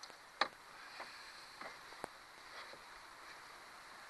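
A few short, sharp clicks and taps of metal fishing pliers and lure hardware as a hook is worked out of a catfish's mouth in a landing net. The loudest click comes about half a second in, and fainter ones follow at irregular intervals over a quiet hiss.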